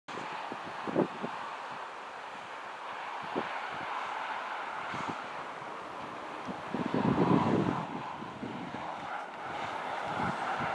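Wind buffeting the camera microphone in gusts over a steady outdoor hiss. The gusts come as short low thumps, with the strongest and longest one about seven seconds in.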